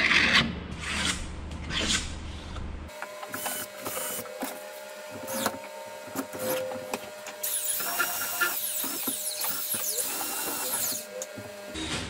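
A utility knife blade scraping and cutting through carpet in rough strokes. About three seconds in, a cordless drill takes over, running with a steady whine and scattered clicks, loudest and hissiest in its last few seconds.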